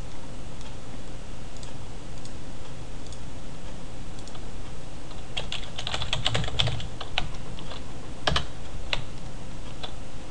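Computer keyboard typing: a quick run of keystrokes about halfway through, then a few single key presses, over a steady low background hum.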